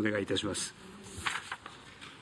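A man's voice speaking Japanese, ending about half a second in, then low room tone with one short soft noise a little past a second.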